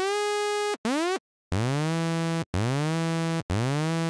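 Zebra HZ software synthesizer playing a bright sawtooth tone in five separate notes, two higher then three lower. Each note slides up one octave over a fraction of a second and then holds steady: an envelope is sweeping the pitch up an octave on every key press.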